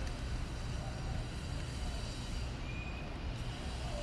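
Steady low background rumble, with a faint short high peep about two and a half seconds in.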